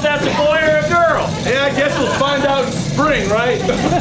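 A person's voice making unintelligible, wordless sounds that rise and fall in pitch.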